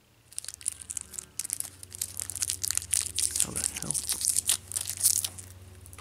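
Plastic toy packaging being crinkled and torn open by hand: a dense run of crackles and rustles for about five seconds, stopping shortly before the end.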